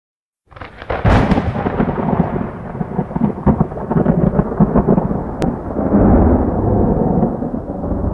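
Thunder sound effect: a sharp crack about a second in, then a long rolling rumble.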